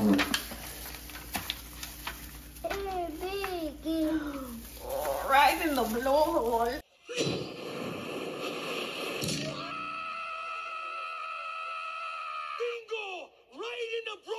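Voices exclaiming in rising and falling cries for a few seconds. About seven seconds in, the sound changes abruptly to a film clip with a long held yell, then more shouting near the end.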